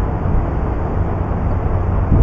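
Wind blowing across a camera microphone high on an open ledge: a steady, low-heavy rushing noise with no separate events.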